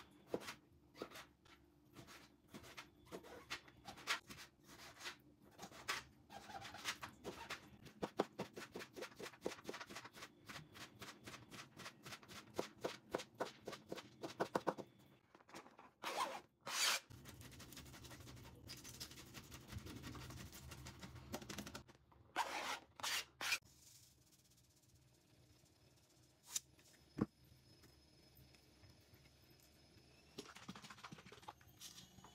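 Chef's knife chopping beetroot on a plastic cutting board: a long run of quick, even chops, about four or five a second, through the first half. Then a few louder strokes and scattered knocks, and it grows quiet near the end.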